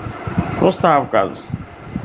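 Speech only: a man's voice says a short phrase in the middle, with brief pauses either side.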